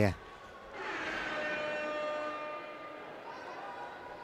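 A steady, horn-like tone made of several pitches at once sounds in the sports hall for about two seconds, starting just under a second in, then fades to a fainter hum. It is typical of the arena's horn or buzzer sounding during the stoppage.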